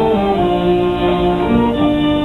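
Police wind band playing live outdoors: brass and woodwinds carrying a melody in held notes.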